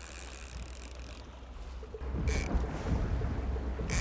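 Wind buffeting the microphone aboard a boat on choppy open water, with a low rumble that grows louder about halfway through. A single sharp click comes just before the end.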